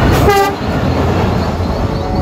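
Train running along the track with a steady low rumble, and one short horn toot about a third of a second in.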